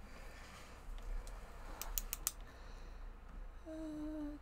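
A few quick, sharp keyboard clicks about two seconds in, over faint rustling at the desk. Near the end a woman starts humming a short tune.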